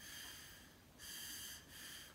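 Breath passed through the hollowed-out metal barrel of a Zebra F-701 pen, stripped to serve as an improvised cricothyrotomy tube. It comes as short airy puffs, about one a second, each with a faint whistling ring from the tube.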